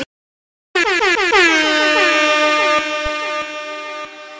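Electronic horn-like tone in a dance remix: after a short dead-silent gap it comes in loud, its pitch sliding down from high and settling on one held note that carries on, slightly softer, to the end.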